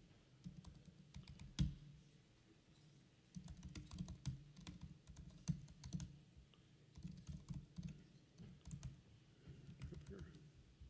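Faint typing on a computer keyboard: keystrokes entering terminal commands, with one louder key click about one and a half seconds in, then quick runs of keystrokes through the rest.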